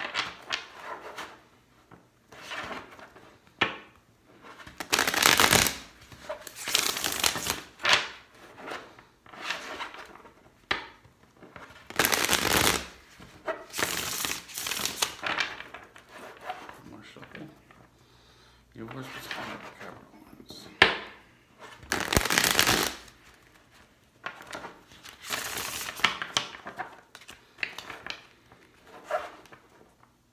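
A deck of tarot cards being shuffled by hand: repeated bursts of riffling and sliding cards, each lasting about a second, with short pauses between them, and a single sharp tap a little past two-thirds of the way through.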